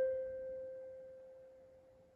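The last note of a piece on a portable electronic keyboard, one held tone fading away over about two seconds.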